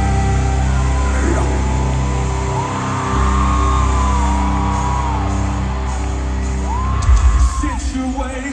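Live rock band with amplified singing, with long held sung notes over a steady bass and sustained chords, echoing in a large hall. Heavier drum hits come in about seven seconds in.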